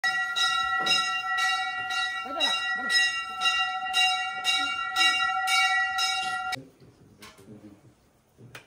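Temple bell rung continuously, struck about twice a second, its ringing tones carrying steadily until it stops abruptly about six and a half seconds in.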